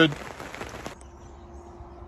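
Steady rain falling on a caravan awning, cut off suddenly about a second in and replaced by quieter outdoor background with a faint steady hum.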